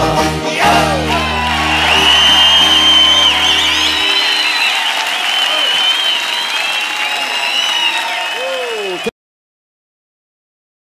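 A recorded folk song ends on a held final chord, and a live audience applauds and cheers. The sound cuts off abruptly about nine seconds in.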